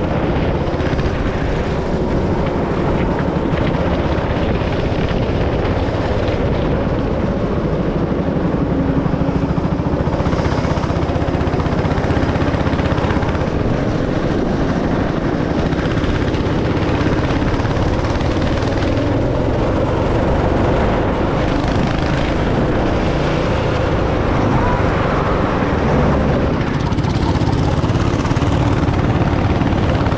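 Go-kart's small petrol engine running hard as the kart laps the track, heard from the driver's seat. The engine note rises and falls as the kart goes through the corners and straights.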